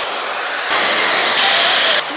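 Dyson Supersonic hair dryer with a diffuser attachment blowing on high heat and high speed: a steady rushing blow with a faint high whine, growing louder about two-thirds of a second in.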